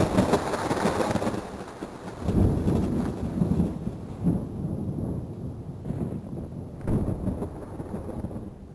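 Thunder: a sudden clap at the start, then rolling rumbles that swell again every couple of seconds and die away near the end.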